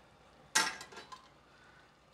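Metal tongs clattering against a stainless steel stockpot: one sharp clank about half a second in, then a lighter knock.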